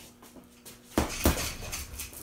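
Two gloved punches landing on a Ringside heavy punching bag about a second in, a quarter second apart, each a slap and thud.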